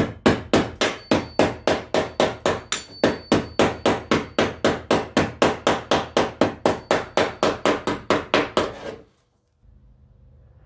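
Hammer tapping steadily and quickly on a car fender's welded-in steel patch, about four blows a second, stopping abruptly near the end.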